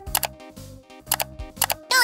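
Children's background music with a repeating bass line, overlaid with a series of sharp mouse-click sound effects from a subscribe-button animation.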